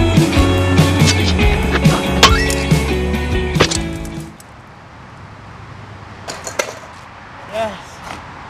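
Guitar-driven rock music cuts off about halfway through. After it, a skateboard clacks sharply on the pavement a couple of times, and a short shout follows near the end.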